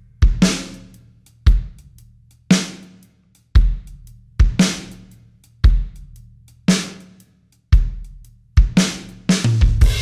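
Drum kit playing a slow, steady beat, with kick and snare hits about once a second under cymbals, saturated through Baby Audio's TAIP tape plugin switched to Hot for heavier distortion. Near the end a sustained hissy wash comes in.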